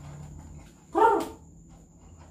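A dog barks once, a short loud bark about a second in.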